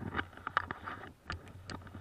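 Close rustling with a quick run of sharp clicks and knocks, about a dozen in two seconds, over a low hum: handling and movement noise on a body-worn camera.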